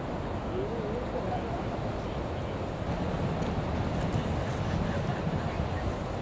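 Steady roar of breaking surf with wind on the microphone, swelling a little from about three seconds in.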